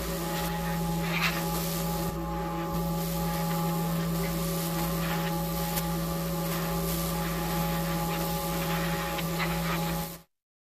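A steady mechanical hum, like a small motor or fan running, with a few faint clicks and rubs from plastic parts being handled.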